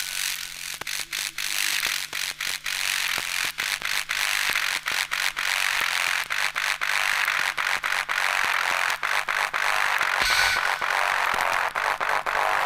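Electronic music from a drum and bass DJ set: a hissing noise build that swells through the middle and upper range, chopped by many brief dropouts, over a faint steady low hum.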